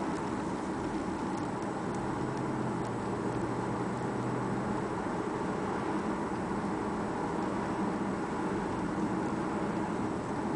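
Audi S8's 5.2-litre V10 running steadily at about 1,500 rpm at a light cruise, heard from inside the cabin as a low, even engine hum over road noise. The engine is still cold.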